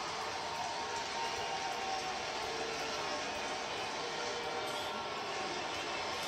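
Steady murmur of a ballpark crowd in a baseball TV broadcast, heard through the television's speaker.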